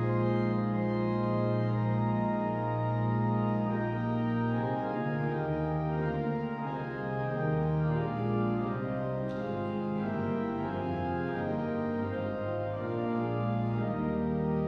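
Pipe organ playing a hymn in full, sustained chords over a low pedal bass. The chords shift more often from about five seconds in.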